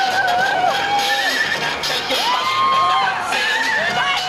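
Several horns blowing long, overlapping blasts at different pitches, each sliding up as it starts and down as it stops, over a crowd cheering and shouting in the street.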